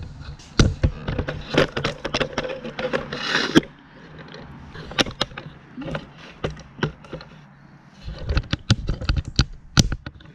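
Handling noise from a camera being picked up and repositioned: a run of knocks, clicks and rubbing against the microphone, thinning out in the middle and picking up again near the end.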